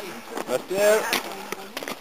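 A person's voice, heard briefly a little under a second in, with a few sharp clicks over a faint hiss.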